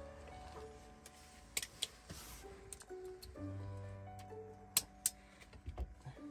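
Soft background music of held, sustained notes, with a few sharp clicks and light knocks over it, the loudest near the end.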